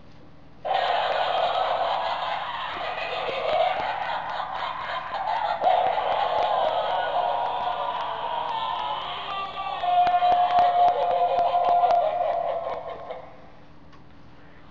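Animated Halloween prop's built-in sound module playing its electronic laugh and spooky sound track through a small, tinny speaker, set off by its try-me button. It starts suddenly about a second in and cuts off about a second before the end, with fine ticking running under it.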